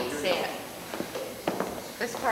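Brief low talk, then two sharp taps about a second and a second and a half in, over a quiet murmur of voices.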